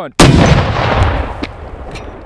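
An RPG-7 blowing up in the shooter's hands as it is fired: one sudden, very loud blast a moment after the end of a spoken countdown, followed by a rumble that dies away slowly.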